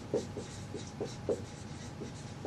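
Dry-erase marker squeaking on a whiteboard in a quick series of short strokes as a word is written.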